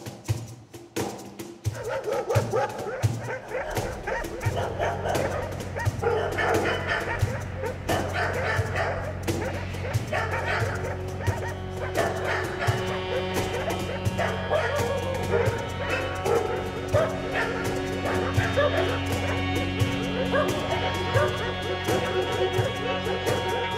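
Live chamber ensemble of strings, clarinet and percussion playing, growing fuller about two seconds in, with busy short figures over sustained low notes.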